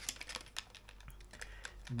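Light, irregular clicks and taps of a plastic blister pack of soft-plastic lures being handled.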